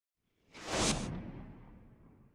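A whoosh sound effect: it swells up about half a second in, peaks just before the one-second mark, and fades away slowly with a low rumble.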